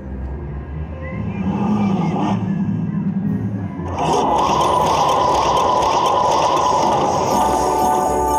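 Huff N' Puff slot machine bonus-round music and effects. About four seconds in, a louder, dense, steady jingle starts as the prize total counts up.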